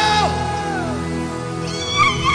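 Live gospel band music: a long held note slides down in pitch about a second in, over sustained keyboard chords and bass.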